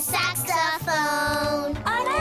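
A child's voice singing a cartoon song over a light instrumental backing with a regular low beat.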